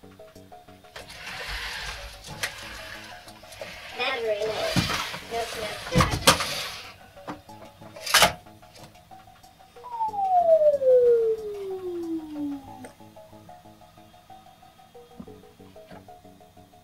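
NAO humanoid robot's joint motors whirring for several seconds as it lowers itself from standing into a crouch, with sharp clicks near the end of the movement. A little later a single falling tone slides down over about three seconds. Soft background music plays throughout.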